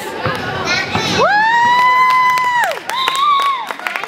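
A child's long, high-pitched cheering yell, held steady for about a second and a half, then a shorter second yell, over a gym crowd's shouting and scattered sharp knocks.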